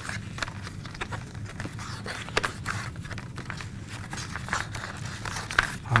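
Poster-board flower petals being curled around a marker by hand: soft paper rustling with scattered small clicks and creaks.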